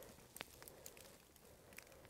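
Near silence, with a few faint brief clicks.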